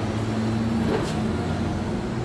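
Steady low hum of a running engine or motor, easing off slightly near the end.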